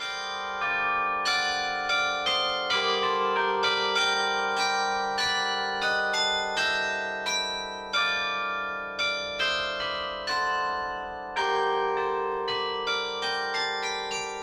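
Bells ringing a slow melody, a new note struck about every half second while the earlier notes keep ringing under it.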